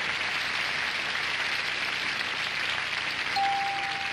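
Studio audience applauding steadily. Near the end a single steady electronic tone sounds over it.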